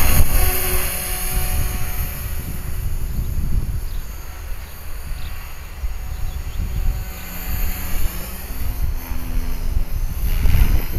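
Electric RC helicopter (HK-450, a T-Rex 450 clone) in flight through a tight loop: a steady pitched hum and whine from its motor and rotor blades, fading in the middle as it climbs away and growing louder again near the end, over a low wind rumble on the microphone.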